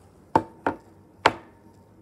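Three sharp knocks close to the microphone, the first two quick together and the third about half a second later, each leaving a short ringing tone: a hand striking something hard.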